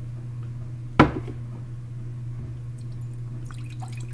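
A plastic juice bottle being handled: one sharp knock about a second in, then a few faint ticks near the end, over a steady low hum.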